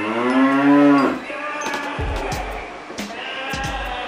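A single cow moo, loud and about a second long, at the start, then background music with a beat.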